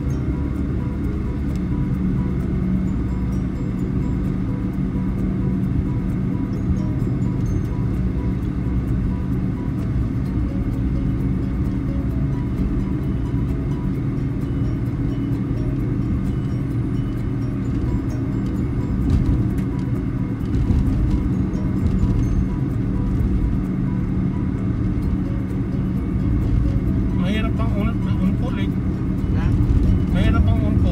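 Steady low road and engine rumble inside a moving car's cabin, with a short stretch of voice near the end.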